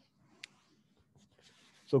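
Near silence: room tone, with one faint short click about half a second in. A man starts speaking near the end.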